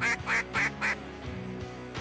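A quick run of about four duck quacks, about three a second, that stops about a second in. Background music runs underneath.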